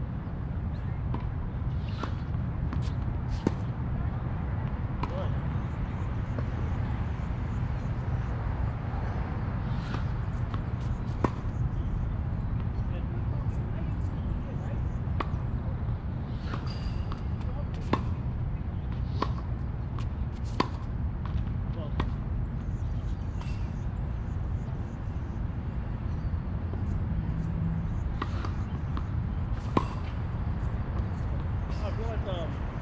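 Tennis balls being struck by racquets and bouncing on a hard court: sharp pops at irregular intervals, a few of them louder, over a steady low rumble.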